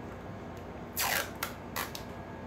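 Handling noise from a tattoo station being set up: a short rasping rip about a second in, then two brief clicks.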